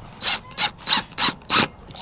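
Cordless impact driver run in about five short bursts, roughly three a second, tightening a brass screw post through a leather dog collar.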